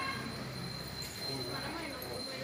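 Indistinct voices of people talking, with a steady high-pitched whine underneath.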